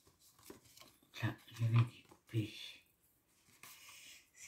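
A few short, quiet, low voice sounds, muttered syllables rather than clear words, with a brief rustle of card stock being handled.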